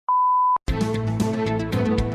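Radio hourly time signal: the last pip, a single steady high beep about half a second long and longer than the short pips before it, marking the top of the hour. It cuts off, and news bulletin theme music starts straight after.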